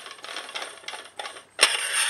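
Barrel shroud of an Airmaks Katran air rifle being unscrewed by hand: light scraping and ticking of metal threads, then about one and a half seconds in a louder metallic scrape with a high ring as the shroud comes free and slides along the barrel.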